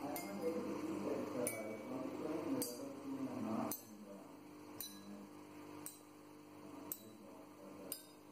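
A row of glass tumblers holding stepped amounts of water, struck one after another with a wooden stick: single clinks about a second apart, each glass ringing at its own pitch.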